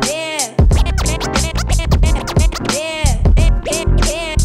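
Hip hop beat with turntable scratching: a sample pushed back and forth in quick rising and falling sweeps over the drums. The bass drops out briefly near the start.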